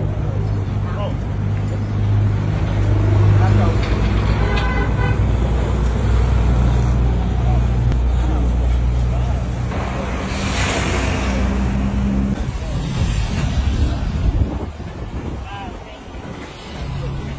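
Street traffic: a vehicle engine running close by with a steady low hum, a brief higher tone about four and a half seconds in, and a louder rush of noise from about ten to twelve seconds in.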